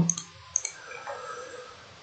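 Computer mouse clicking, with a quick pair of clicks about half a second in.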